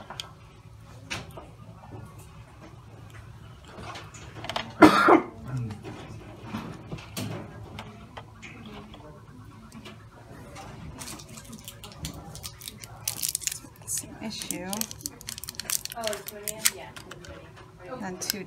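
Small plastic sample tubes, caps and a dropper pipette handled on a countertop: scattered light clicks and taps, busiest in the second half, with a short loud burst about five seconds in. Low speech is heard now and then.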